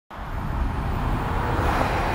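Low rumble of a moving car, starting abruptly and holding steady.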